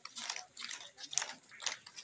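Crowd noise from a marching throng: many overlapping voices and calls coming in irregular bursts.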